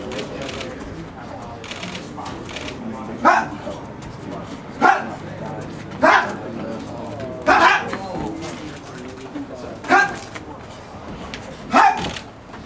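A boxer's short, forceful grunts and exhalations as he throws punches while shadowboxing: about six sharp bursts, one every one to two seconds, over a low gym murmur.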